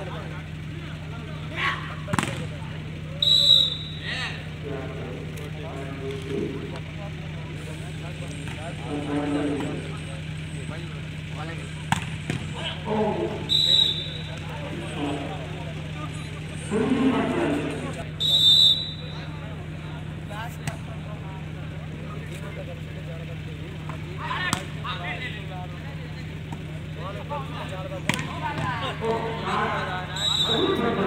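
Volleyball being played: players and spectators calling out, sharp slaps of hands striking the ball, and a few short high whistle blasts, over a steady low hum.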